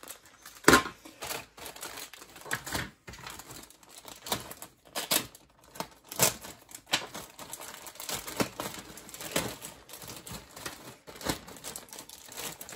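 Clear plastic bags crinkling and bagged plastic kit sprues clicking and knocking on the work surface as they are handled, in irregular bursts; the sharpest knock comes about a second in.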